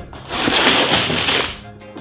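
Plastic bags of LEGO parts sliding and tumbling out of an upturned cardboard box onto a table: a crinkly rush that swells and fades over about a second.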